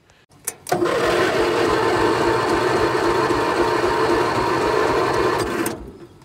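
Gravely 8163-B garden tractor engine being cranked on a cold start: steady cranking that begins suddenly about a second in and stops shortly before the end.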